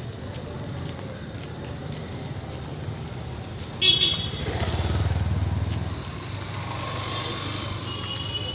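Motorcycle engine passing close by, swelling and fading, with a short horn toot just before it, over a steady hum of road traffic.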